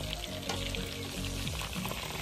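Chicken wings deep-frying in hot oil, a steady sizzling hiss, with background music playing over it.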